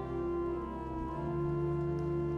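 Organ playing soft sustained chords, the held notes changing to a new chord about halfway through.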